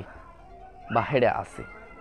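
A man's voice: one drawn-out vocal sound with a bending pitch about a second in, ending in a short hiss, between quiet pauses.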